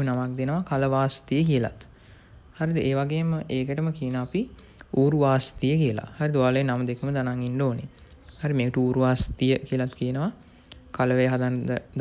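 A man talking in Sinhala in short phrases with brief pauses, over a steady high-pitched trill of crickets.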